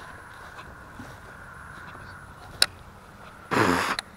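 Faint steady outdoor background hum with one sharp click about two and a half seconds in, then a man's voice briefly near the end.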